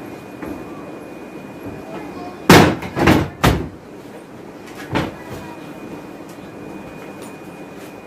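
Wet cloth being shaken out with sharp snaps: three in quick succession, then one more a moment later.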